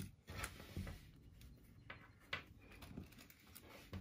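Faint handling sounds of pinning fabric: cotton fabric rustling with a few soft clicks as straight pins are taken from a magnetic pin dish and pushed through the folded layers.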